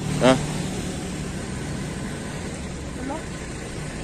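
A motor engine running steadily, a low even drone with no change in speed.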